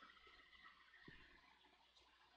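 Near silence: faint room tone with a low steady hum and one soft tick about a second in.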